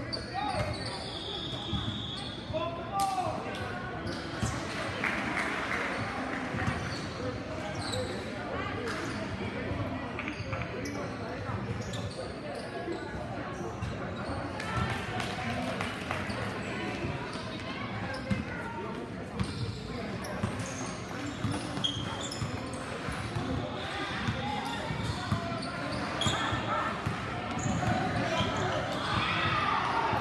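A basketball game in a large, echoing gym: a basketball bouncing on the court floor as it is dribbled, among the voices of players and people on the sidelines calling out.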